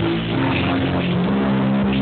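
Techno/house DJ set played loud over a festival sound system: a bass synth line stepping between low notes about twice a second, with hi-hat-like accents on top.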